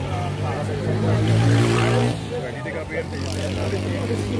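A motorcycle engine running, growing louder about a second in and easing back about two seconds in, with voices talking over it.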